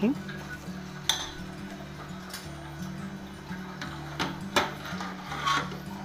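A spoon stirs thick cooked sago in a metal pot, knocking against the pot several times with short, sharp clinks, over background music.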